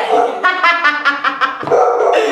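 A dog barking in a quick run of short barks, starting about half a second in.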